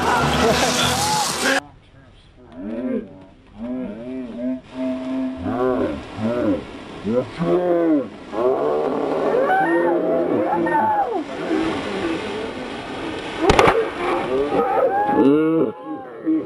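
Boys laughing hard, with rising and falling whoops and hoots. A loud noisy passage cuts off suddenly about a second and a half in, and there is one sharp knock near the end.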